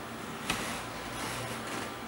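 Steady low room hum with one light click about half a second in.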